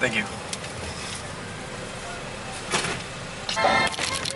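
A car idling with a steady low hum at a drive-through window. A short voice sound comes at the start and another near the end, with a brief rustle about three seconds in.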